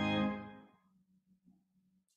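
Church organ holding a full chord that is released about a quarter second in, its echo in the room dying away within the first second. A faint low hum remains after it.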